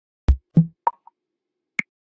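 Four short percussive hits, each higher in pitch than the last: a deep thump, then two quick higher pops, and a final sharp click nearly a second later.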